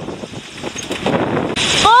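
Wind buffeting the microphone over water rushing past a sailboat under way on choppy sea, growing to a louder rush about one and a half seconds in.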